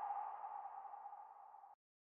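Ringing tail of a ping-like logo sting sound effect, one tone that fades out over about a second and a half.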